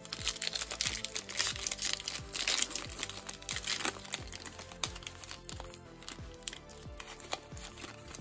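Foil wrapper of a Topps Stadium Club baseball card pack crinkling and tearing as it is opened by hand, densest in the first four seconds and then thinning to scattered crackles as the cards are slid out. Soft background music runs underneath.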